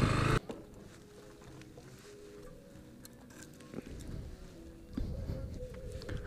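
A motorcycle engine idling cuts off abruptly about half a second in, leaving faint distant music with steady held notes.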